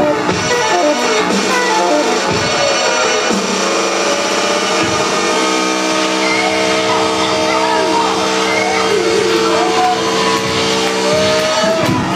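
Live band music led by saxophone, played loud, with a long held note coming in about halfway through and voices shouting over it.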